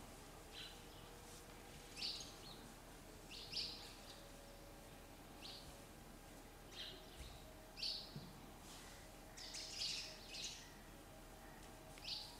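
Faint bird chirps: about a dozen short, high calls spaced irregularly over quiet room tone.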